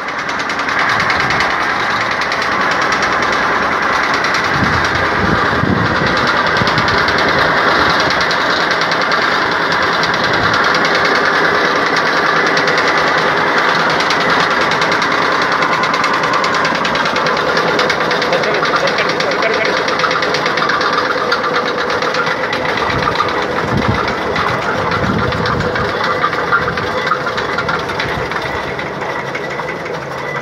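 Weight-driven generator machine running loudly and steadily, a continuous mechanical clatter and drone.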